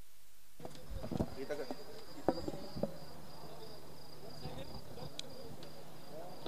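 Faint steady high chirring of crickets, starting about half a second in, over a low steady hum, with distant voices and a few sharp clicks.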